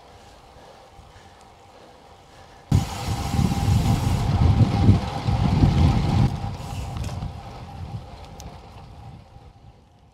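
Wind buffeting a handlebar-mounted action camera's microphone as a road bike rolls along: a low rumbling rush that comes in suddenly about three seconds in, eases after about six seconds and fades away near the end.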